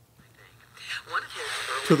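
Small handheld radio being switched on and tuned. About a second in, static hiss comes up, with brief snatches of broadcast sound between stations.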